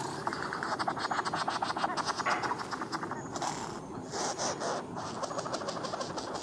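Male flame bowerbird making its courtship display sounds: a fast run of dry clicks through the first half, then sparser clicks, strange and almost robotic.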